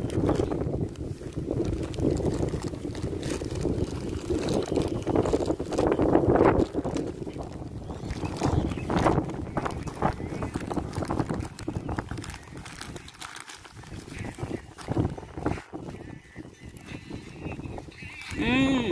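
A plastic bag of popcorn crinkling and crackling in short bursts as it is handled and opened, over wind buffeting the microphone for the first two-thirds or so.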